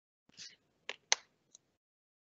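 A short soft rustle, then two sharp clicks about a quarter second apart, the second louder, and a faint third click after half a second more.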